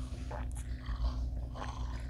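Two people sipping thick mango lassi through plastic straws, with a few short, soft slurps. A steady low hum runs underneath.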